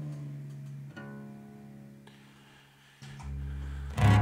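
Guitar strings plucked singly and left to ring out and fade, as when a guitar is checked during tuning. A fresh note comes about a second in, and a low string is struck near the end.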